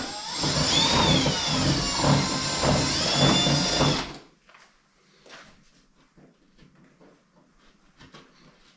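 Cordless drill running for about four seconds, its bit reaming out a hole in Gib plasterboard to enlarge it, the motor whine rising and dipping in pitch as it works round the hole. It then stops suddenly, leaving only faint handling clicks.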